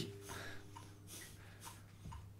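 Faint metronome ticking about twice a second over a steady low hum, with a violin note dying away at the start.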